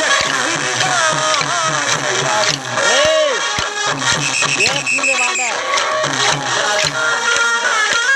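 Traditional folk music for a kolatam stick dance: a steady, regular beat under a wavering melody line, with voices mixed in.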